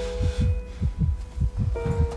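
Heartbeat sound effect, a rapid run of low thuds in lub-dub pairs, over a held musical note. It is the drama's cue for a racing, pounding heart.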